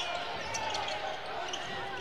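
Basketball game sound on a hardwood court: a ball being dribbled, with faint voices carrying in a large, sparsely filled arena.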